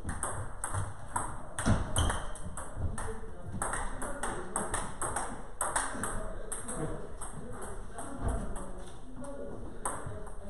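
Table tennis ball clicking back and forth in rallies, bouncing on the table and struck by the paddles, several sharp clicks a second, with a couple of low thumps about two seconds in and again near the end.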